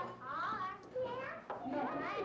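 Young children's voices in a playroom, chattering and calling out, with a sharp knock about one and a half seconds in.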